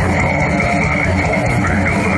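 Heavy metal band playing live through a PA: distorted electric guitars, bass and drums, with the singer's vocals on top, loud and dense without a break.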